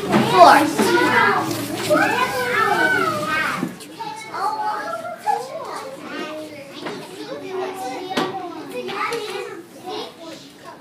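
Young children's voices talking and chattering. The voices are louder for the first few seconds, then turn to quieter chatter.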